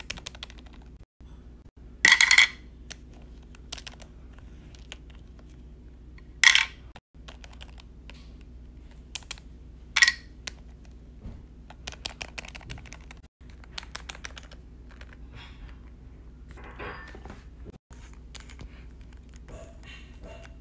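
Small plastic toys handled and set down on a hard surface: scattered light clicks and taps, with three louder brief bursts of noise about two, six and a half and ten seconds in.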